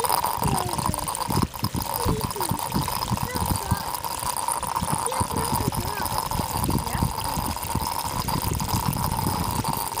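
Water gurgling and bubbling as it wells up out of a hole in the ground around a buried pipe opening, in irregular bursts: an underground water leak pushing up hard enough to wash gravel out of the hole.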